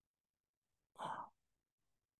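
A single short breath, about a third of a second long, about a second in; otherwise near silence.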